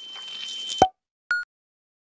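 Cartoon sound effects: a steady high ringing tone over a rising hiss, cut off by a sharp short impact about 0.8 s in, then a brief high beep about 1.3 s in, with silence around it.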